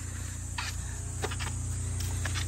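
Quiet outdoor background of a steady high hiss over a low hum, with a few faint light taps of footsteps in rubber slippers on stone steps.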